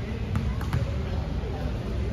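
A few sharp basketball bounces echoing in a large gym, over a murmur of players' voices.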